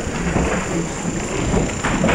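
Low rumbling handling noise from a handheld camera being moved about, with a thin steady high whine behind it and faint indistinct voices.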